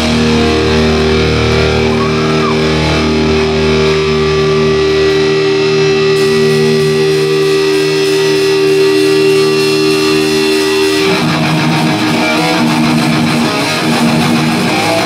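Live hardcore punk band's bass and electric guitar holding a long ringing chord, which breaks off about eleven seconds in as the band goes into choppy strumming.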